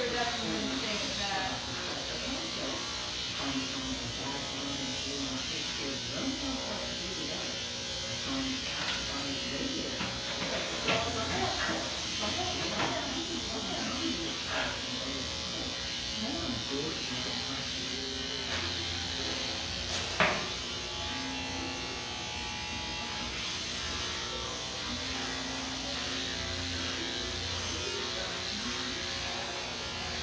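Cordless electric pet clippers with a comb guard running steadily as they cut through a black dog's long coat. A single sharp click comes about two-thirds of the way through.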